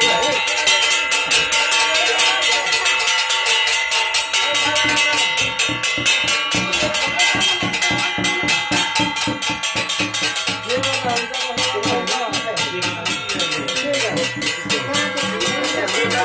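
Hand-held brass plates and cymbals beaten with sticks in a fast, even rhythm of roughly seven strokes a second, ringing metallically throughout: the percussion of a Nepali dhami-jhakri shamanic ritual.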